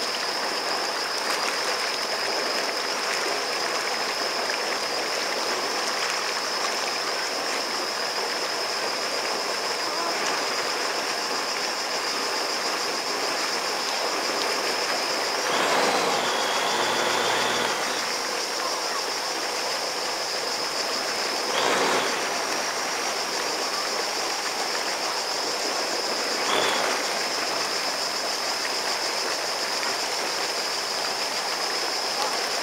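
Steady rushing of churned water and jet wash behind a slow-moving Sea-Doo GTX personal watercraft, with a thin steady high tone over it. The rush swells louder for a couple of seconds near the middle and briefly twice more later.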